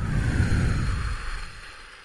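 A gust of wind whooshing, with a low rumble under it. It swells in the first half second, then fades away over about two seconds.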